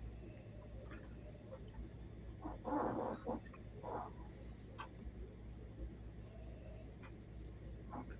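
Quiet room tone with a steady low hum, a few faint clicks, and short soft rustling sounds about three and four seconds in.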